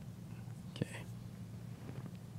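A single sharp click a little under halfway through, followed at once by a short breathy, whisper-like sound, over a steady low room hum.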